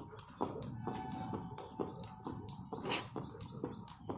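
A plastic jump rope slapping the paving tiles in a steady rhythm, about four strikes a second, as it is skipped. Birds chirp in a quick series of short falling notes from a little before the middle to near the end.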